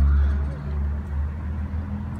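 Low rumble of a motor vehicle's engine, loudest in the first half second and then easing off, with faint voices in the background.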